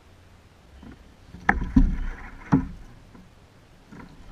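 Landing net's handle knocking against the kayak hull: three sharp knocks with a short clatter, spread over about a second near the middle.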